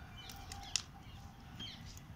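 A single faint snip of scissors cutting through a dried, dead rose stem, a short sharp click a little under a second in.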